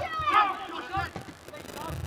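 Faint voices calling out across a football ground, dropping to a lull about halfway through.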